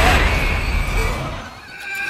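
Horror-trailer sound design: a deep boom hit at the start that dies away over about a second under a thin, high ringing tone, then a fainter high tone that sinks slightly in pitch near the end.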